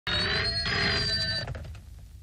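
Desk telephone ringing with several steady high tones, a brief dip partway through, then stopping about a second and a half in as the call is answered.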